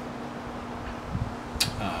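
Digital calipers being worked against a small metal output jack, with one sharp click about one and a half seconds in, over a low steady hum.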